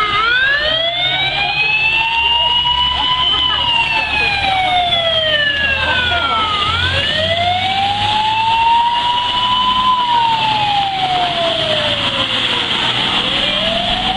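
Fire truck siren wailing, its pitch rising and falling slowly in two full sweeps of about six and a half seconds each, over a low rumble.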